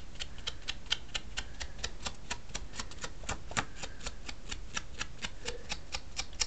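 A small ink sponge dabbing ink onto the edges of a cardstock layer: quick, even taps, about six a second.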